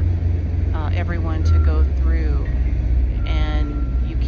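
A person's voice in short stretches of speech over a steady low rumble.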